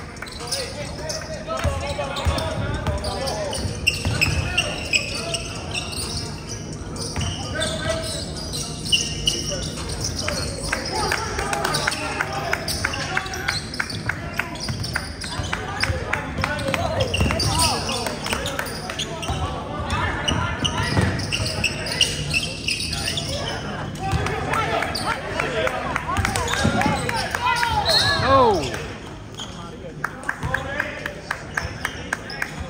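Basketball bouncing on a hardwood gym floor during play, with players' voices echoing around the hall.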